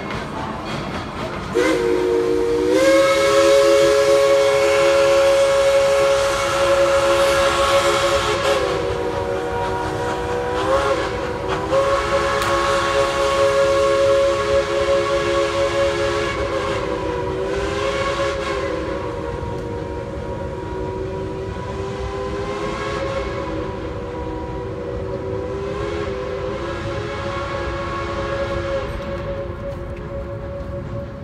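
Steam locomotive's chime whistle sounding several notes at once, starting about a second and a half in and held long, its pitch dipping briefly several times, over the hiss and rumble of the departing steam train.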